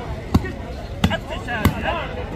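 A volleyball struck by hand three times in quick succession during a rally: sharp slaps a little over half a second apart, with voices in the background.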